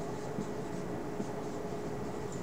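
Dry-erase marker writing on a whiteboard: a run of short, faint scratchy strokes as the letters are drawn, over a steady low room hum.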